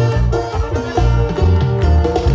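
A live band playing a lively Mexican son for dancing, with pitched melody notes over a strong, steady bass beat.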